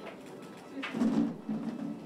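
A person's voice, low and muffled, in short repeated pulses that start about a second in.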